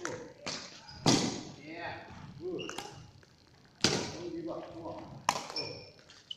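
Badminton rackets striking a shuttlecock back and forth across the court: four sharp smacks, the loudest about a second in, each ringing on in a large hall.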